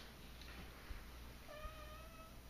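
American Bulldog puppy giving one short, high whine of under a second, about a second and a half in, while it is held down for a vaccine injection.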